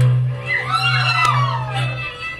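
Folk music: a loud low note held steady and stopping abruptly at the end, with a high voice sliding down in pitch over it from about half a second in.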